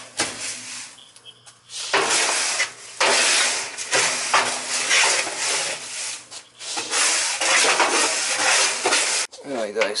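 Gritty scraping and rustling of clay oil-absorbent granules (Speedy Dry) being scooped and rubbed by a gloved hand against the steel walls of a cut-open heating oil tank, soaking up the leftover oil sludge. It comes in several long strokes, with a quieter pause early on.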